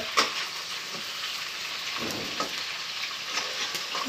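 Homemade pork sausage (linguiça caipira) sizzling steadily as it fries in its fat in a frying pan on a wood stove. A metal spoon knocks and scrapes in the pan a few times.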